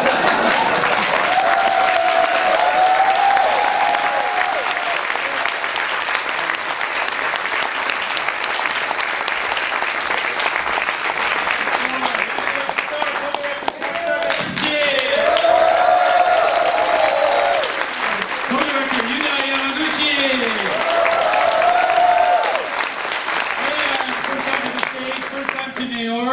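Audience applauding steadily in a large hall, with voices calling out over the clapping at several points.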